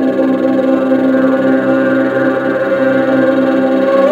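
Improvised ambient sound-bath music: a synthesizer holds a steady drone of several sustained tones, recorded on a smartphone.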